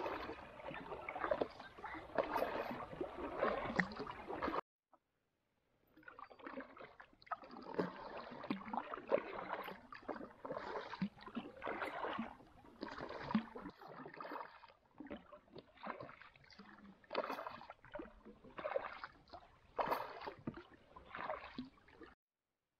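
Kayak paddle strokes in calm river water: the blades dip, pull and drip, roughly one stroke a second. About four and a half seconds in the sound cuts out abruptly for over a second, then the strokes carry on.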